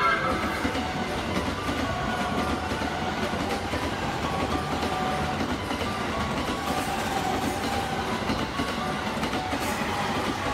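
Electric commuter train running past on the line below, a steady rumble of wheels on rail.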